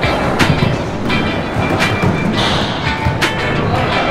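Small skateboard wheels rolling over a concrete skate-park floor, a loud steady rumble, with music playing over it.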